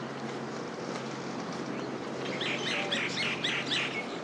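A bird chirping: a quick run of about eight short, high notes in the second half, over a steady low hum of street background.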